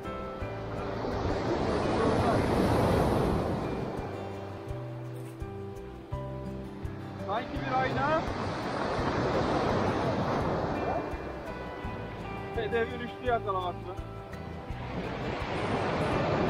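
Sea waves breaking and washing up a pebble beach, the surf swelling and fading twice and building again near the end. Background music plays underneath.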